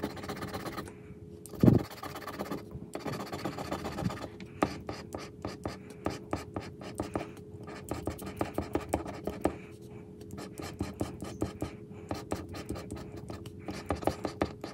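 A plastic scratcher tool scraping the latex coating off a paper lottery scratch-off ticket in quick, repeated short strokes. There is a single dull thump a couple of seconds in.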